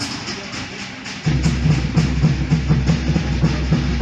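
Polynesian drumming: light tapping at first, then a loud, fast drum beat starts about a second in.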